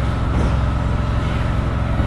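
Steady low mechanical drone of a running engine, unchanging throughout.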